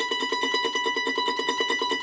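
Ellis F-style mandolin with one high note, the B at the seventh fret of the E strings, tremolo-picked with rapid, even strokes.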